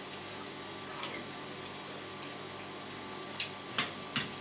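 Quiet room tone with a few faint, short clicks from a person eating soup with a spoon, about a second in and twice near the end.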